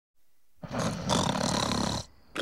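Loud, harsh distorted electric guitar starting about half a second in.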